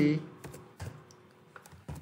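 Computer keyboard being typed on: a few separate keystrokes, spaced unevenly, after the tail of a spoken word.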